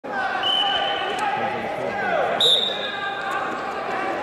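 Referee's whistle blown to start a wrestling bout: a short, thin whistle tone about half a second in, then a louder, sharp blast about two and a half seconds in that fades within a second. Voices echo in the large hall throughout.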